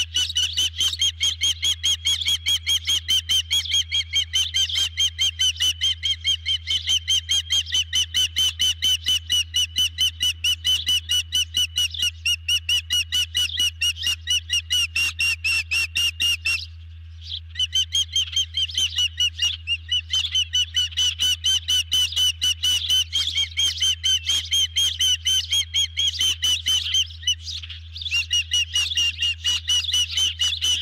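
Osprey calling on the nest: a long, rapid series of high, piercing chirped whistles, several a second, breaking off briefly twice, with a steady low hum underneath.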